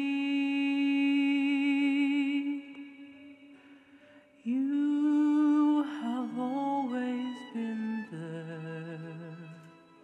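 Solo singer holding a long note with vibrato over soft accompaniment, then, after a brief lull, another long note and a falling closing phrase over low sustained accompaniment that fades out near the end.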